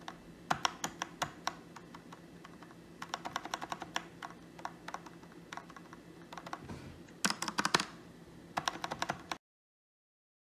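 Backspace key on a mechanical keyboard with brown-stem switches, pressed over and over in quick runs of clacks; its stabilizer is greased with dielectric grease above and below the wire to stop wire rattle. The loudest burst of presses comes about three quarters of the way through, and the sound cuts off abruptly near the end.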